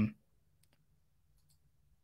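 A handful of faint computer mouse clicks spread over about a second, with little else to be heard.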